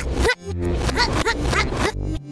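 A cartoon soundtrack played backwards: music with steady bass notes under a rapid run of short clicks and brief squeaky gliding vocal sounds.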